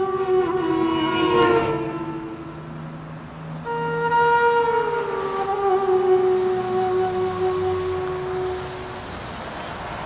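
Background film score: a wind instrument, flute-like, holding long notes over a low drone. A new, higher note enters about four seconds in and slides down to a lower one held until near the end.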